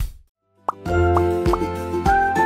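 A last drum hit ends the chant's beat, then after a brief gap a single quick rising cartoon 'plop' sound effect, and upbeat children's background music with held notes and a kick drum starts right after it.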